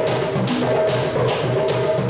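Afro-Cuban hand-drum music with congas: a steady rhythm with sharp high strokes about three times a second over a repeating low drum pattern.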